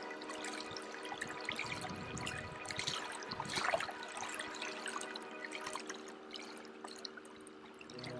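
Background music of held, steady notes, with scattered short ticks like dripping water over it, busiest three to four seconds in. The sound fades down near the end.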